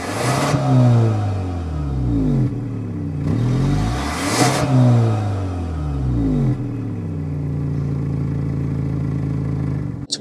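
Kia Stinger GT-Line's turbocharged four-cylinder engine heard through its quad exhaust, revved twice with the pitch rising and falling. It then settles to a steady idle for the last few seconds.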